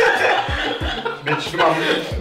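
A group of men chuckling and laughing together, mixed with a few spoken words.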